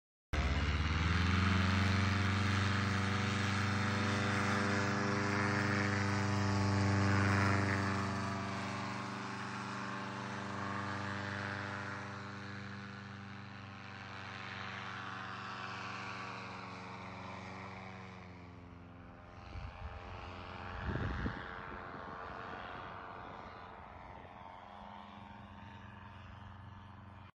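Powered paraglider's engine and propeller running hard: the note climbs quickly at the start, holds steady, then slowly fades and drops in pitch as the machine flies off, with a couple of brief low rumbles about twenty seconds in.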